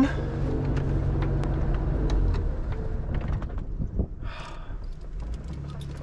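1952 Alvis TA21's straight-six engine idling, heard from inside the cabin. About four seconds in there is a click and the engine note dies away as it is switched off.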